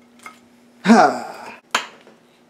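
A short laugh, "ha", about a second in, then one sharp click near the end.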